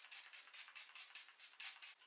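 Revolution Hyaluronic Fixing Spray pump bottle being sprayed at the face, a faint hiss pulsing rapidly, several spurts a second; the bottle is running out.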